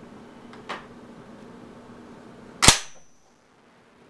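Remington Model 1100 shotgun's action worked by hand: a light click as the bolt is drawn back, then about two seconds later a single sharp metallic clack with a brief ring as the bolt slams forward and closes.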